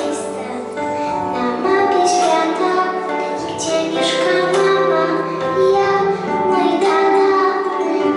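Young girls singing a song into microphones over a musical accompaniment.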